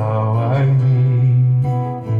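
A man singing a long held note that wavers about half a second in, over an acoustic guitar.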